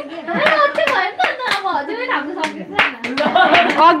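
Hand claps, about two or three a second, mixed with lively voices talking.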